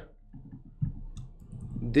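A few quiet computer mouse and keyboard clicks as text is selected, copied and pasted.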